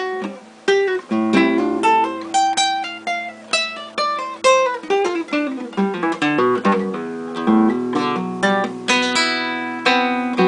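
Solo acoustic guitar playing a study built on ligados (hammer-on and pull-off slurs): quick runs of plucked notes over sustained bass notes, growing into a dense flurry of notes near the end.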